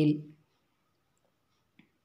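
A woman's voice finishing a word, then silence broken once by a faint, short click near the end.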